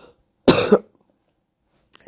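A single short cough from a woman, about half a second in.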